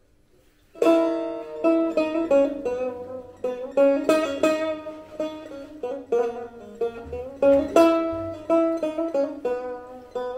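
Setar, the Persian long-necked lute, played with quick plucked notes and strongly accented strokes, coming in about a second in.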